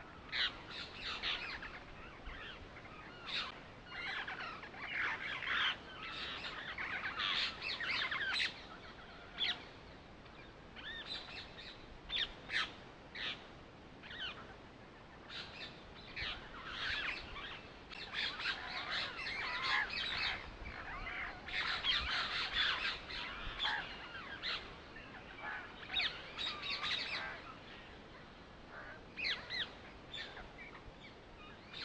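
Birds chirping and calling, many short high calls overlapping one another, with a few brief lulls.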